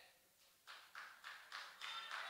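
Near silence with faint, evenly spaced taps, about three a second, starting about half a second in.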